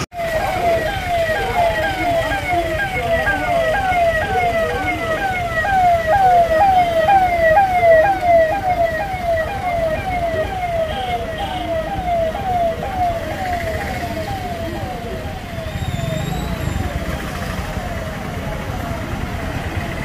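Police vehicle siren sounding a fast repeating yelp, each rise in pitch about two to three times a second, fading out a little past halfway, over the engine and traffic noise of a slow-moving vehicle convoy.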